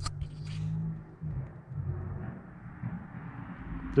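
A low steady hum with a faint rumble, and a few brief clicks and rustles in the first half second.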